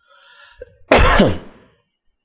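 A man clears his throat once into a close microphone, a short loud rasp about a second in, after a soft intake of breath.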